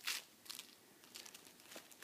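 Faint rustling and crinkling of baby play-gym toys, with a short sharp crackle at the start and a few small clicks after it.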